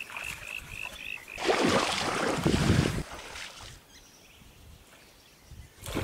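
Legs wading through shallow, muddy water, sloshing and splashing loudly for about a second and a half, then going quiet, with a sudden splash at the very end. In the first second and a half an animal gives about six short, high, evenly repeated call notes.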